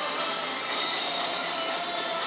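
Background music with long held tones, running on without a break.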